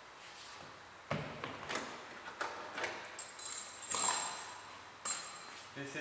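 Handling of a removed car door's window seal strip and trim: a series of light knocks and clicks, with two short, shrill rattles about three and five seconds in.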